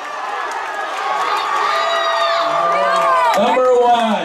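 Football crowd in the stands cheering and yelling as a long pass play goes for a touchdown, with several voices shouting over the noise.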